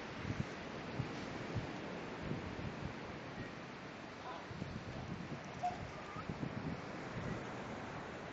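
Steady wash of wind and surf on an open beach, with soft irregular low bumps and a few faint, brief distant voices or chirps.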